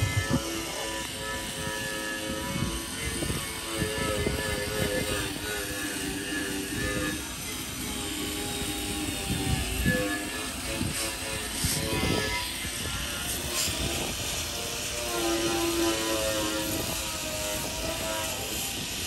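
Outdoor wind rumbling on the microphone, with faint hums at a few shifting pitches and a couple of short metallic knocks from the rebar work about ten and twelve seconds in.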